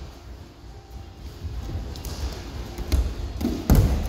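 Feet and hands thudding on a foam-padded wrestling mat as a child runs into a round-off and back somersault, with a couple of sharper thuds about three seconds in and a heavy landing thud near the end.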